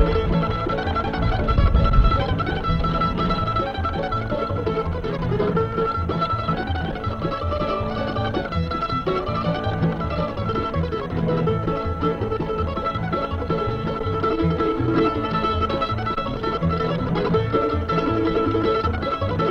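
Live bluegrass tune on five-string banjo, flat-top guitar and mandolin, with a steady rhythm and a low bump about two seconds in.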